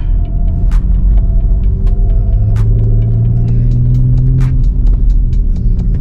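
Audi RS4 Avant's twin-turbo V6 engine and studded tyres running over the snow-covered ice in a steady low rumble, the engine note swelling from about two seconds in until about four and a half seconds. Music plays alongside.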